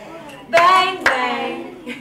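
Girls and a woman singing two long notes together, with sharp hand claps about a second in and near the end.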